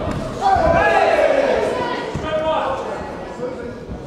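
Spectators and cornermen shouting during a kickboxing bout, the loudest shout starting about half a second in, over dull thuds from the fighters' footwork and strikes on the canvas.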